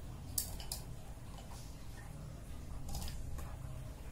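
Plastic pens being slid one by one under rubber bands around a small metal tin: light handling with a few sharp clicks, two close together about half a second in and more around three seconds.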